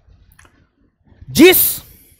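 A pause in a man's speech with a few faint clicks, then one spoken word ending in a hissed 's'.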